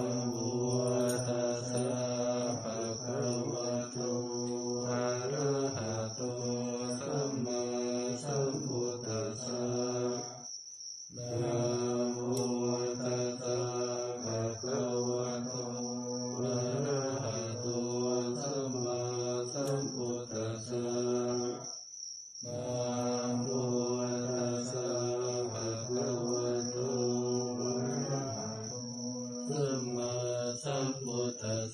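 Thai Buddhist morning chanting (tham wat chao) in Pali: steady, melodic recitation in three long phrases with brief breaths between them. A steady high-pitched tone runs underneath.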